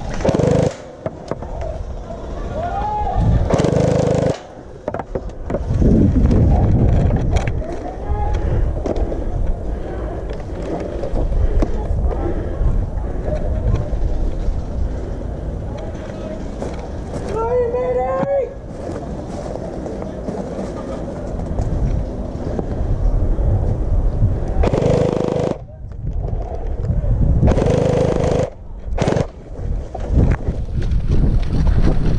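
Wind and handling rumble on an action camera's microphone as a gel ball player moves around the field. There are several short half-second bursts of electric gel blaster fire and a distant voice calling about midway.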